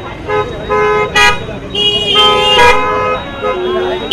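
Car horn honking: a few short toots, then a longer blast of about a second, in a steady two-note tone.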